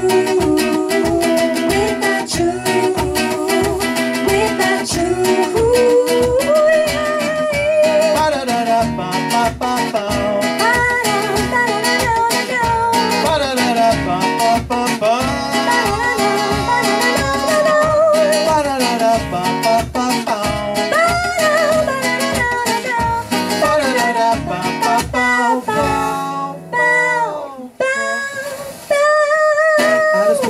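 Live acoustic pop song: an acoustic guitar strummed in a steady rhythm under a woman's and a man's singing. The accompaniment drops out briefly about four seconds before the end, then comes back.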